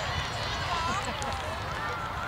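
High-pitched voices of young players and sideline spectators calling out in snatches, the words not clear, over a steady low rumble.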